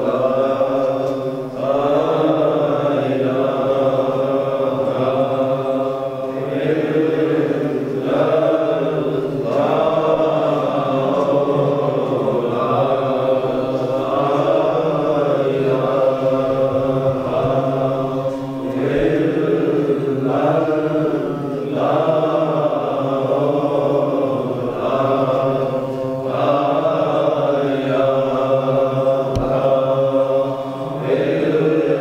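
A group of men chanting together in unison, a continuous Sufi devotional chant sung in repeated phrases with only brief dips between them.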